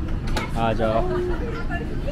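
A voice speaking briefly over the steady low rumble inside a tram.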